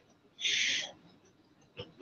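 A short hiss lasting about half a second, followed by a faint click near the end, in a near-silent room.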